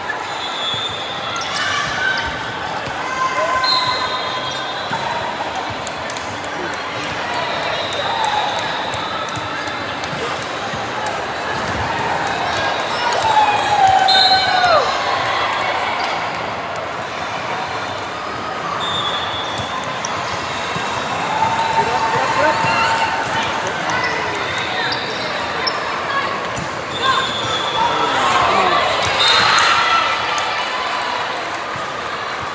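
Volleyball being played in a large echoing gym: the ball struck and bouncing, sneakers squeaking on the hardwood court, and players and spectators calling out.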